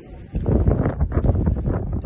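Wind buffeting the microphone in uneven gusts, a loud low rumble that sets in suddenly about a third of a second in.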